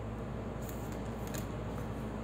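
A few faint short clicks and paper rustles from handling an open book, over a steady low room hum.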